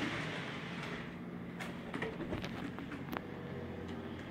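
Small electric model train locomotive running slowly on its track, a faint low motor hum with a few light clicks. Its louder running sound dies away in the first second as it is throttled down.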